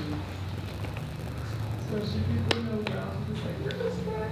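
Handling noise from a flexible underwater camera housing being rolled back over a lens and dome clamp: soft rustling of the housing material, with a few sharp clicks of hard parts in the second half, the loudest about halfway through.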